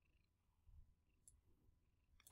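Near silence: faint room tone with a couple of very faint ticks.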